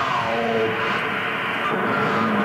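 Intro of a death metal/grindcore record playing from a vinyl 7" at 45 rpm: a steady, dense drone with slowly gliding tones, before the song proper kicks in.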